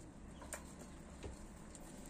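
Faint sounds of domestic pigeons feeding on mixed seed on a tiled floor, with a short click about half a second in and a softer one a little past a second.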